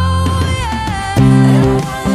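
Electric bass guitar playing along with a Christian pop song recording: a woman's voice holds a sliding sung note near the start, then plucked bass notes come in about a second in and the music gets louder.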